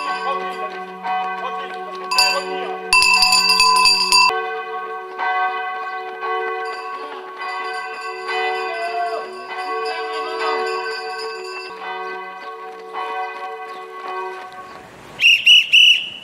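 Church bells ringing: several notes are struck and ring on together, loudest in the first few seconds, then die away gradually.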